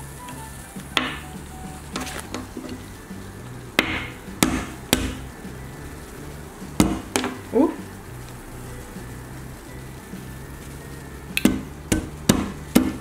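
About ten sharp, scattered knocks as wooden chopsticks strike and crack a cherry tomato frozen rock-hard, over quiet background music with a steady low beat.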